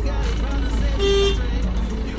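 Outdoor city traffic ambience with a steady low rumble, and a single short horn toot about a second in.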